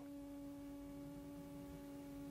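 A faint, steady held tone with a few fainter overtones, a sustained drone that stays unchanged throughout.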